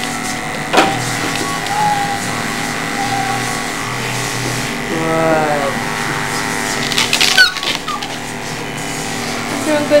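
Electric dog-grooming clippers running with a steady buzzing hum as they are worked over a small curly-coated dog's hind leg. Short sliding pitched sounds come over the hum a few times, and a brief louder burst stands out about seven and a half seconds in.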